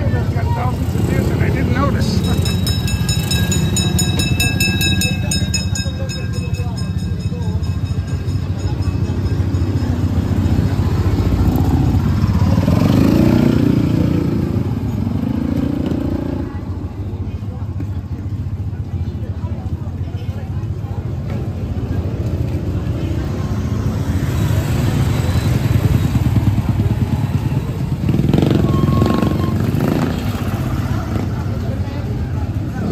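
Busy street traffic: small motorcycle and motorized tricycle engines run steadily and swell as they pass close by, over a constant low engine rumble, with voices of passers-by mixed in. A steady high-pitched tone sounds for a few seconds about two seconds in.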